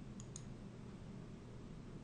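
Two faint computer-mouse clicks in quick succession, about a quarter of a second in, over low room hiss.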